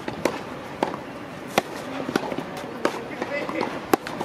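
Tennis ball struck with rackets and bouncing on clay in a practice rally: five sharp pops spaced about a second apart, the loudest near the end.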